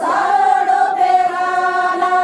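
A group of Banjara women singing a folk song together in unison, unaccompanied, holding one long sustained note.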